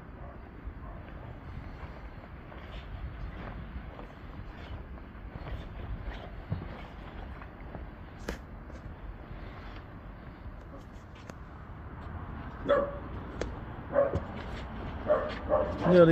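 Steady outdoor background noise, with a few short, sharp animal calls near the end.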